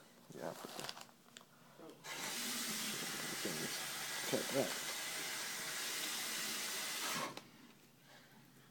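Water running steadily from a tap, turned on about two seconds in and shut off about five seconds later.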